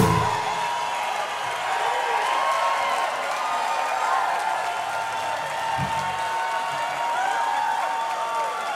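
Concert audience applauding and cheering with scattered whoops, right after the band's final chord ends the song.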